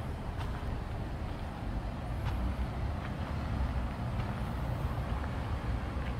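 Steady low rumble of road traffic, with a few faint clicks.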